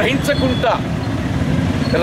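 A man speaking in short phrases over a steady low rumble of background noise, like nearby traffic.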